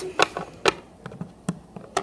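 Hard plastic toy figurines being set into a plastic toy limousine, making about six light clicks and taps spread through the two seconds.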